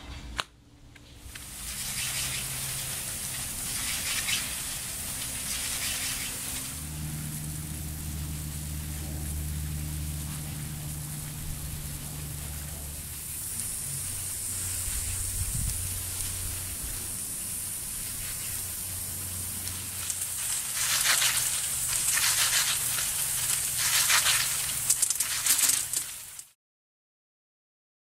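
Irrigation zone running with MP rotator multi-stream rotary nozzles: a steady hiss of water streams spraying over lawn and plants, louder and more crackly in spells. A low hum runs underneath for several seconds in the middle.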